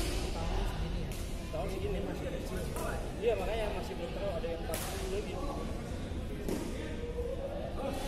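Indistinct voices echoing in a large sports hall, with several sharp smacks of badminton rackets hitting shuttlecocks scattered through.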